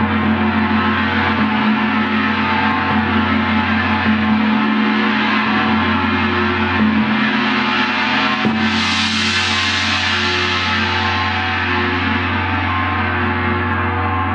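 Large planet gongs ringing with a dense, shimmering wash of sustained tones. About eight and a half seconds in, a fresh mallet strike brings a bright surge of high overtones that slowly fades.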